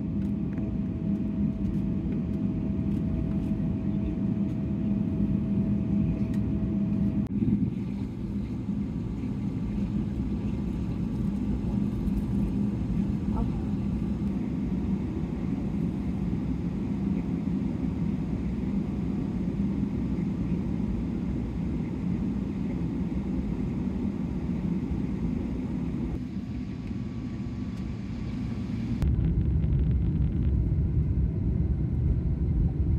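Cabin noise inside a Boeing 777-300ER taxiing: the steady low rumble and hum of its GE90 engines at low power, with a droning tone underneath. Near the end the low rumble grows louder.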